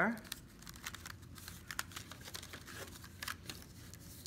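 Folded, slit-cut paper rustling and crinkling as it is opened up and pressed flat on a table, a scatter of short crackles.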